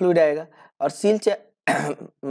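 A man speaking Hindi in short bursts, with a brief throat-clearing sound near the end.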